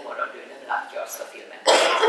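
Speech, then a loud cough about a second and a half in.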